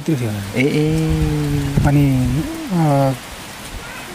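Speech: a man talking with long, drawn-out syllables, then a short pause near the end.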